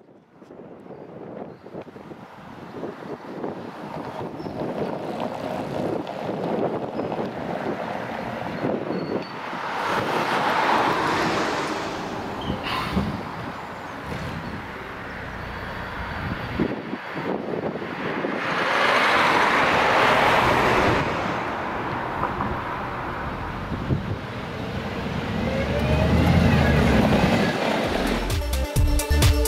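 Roadside traffic: vehicles passing with tyre noise swelling and fading twice, and a city bus at the stop whose diesel engine rises in the last few seconds as it pulls away.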